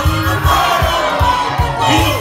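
Congregation singing and calling out together in loud worship over music with a steady low beat.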